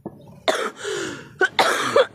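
A woman with asthma, who suffers attacks of breathlessness, coughing several times in a row in short, harsh bursts.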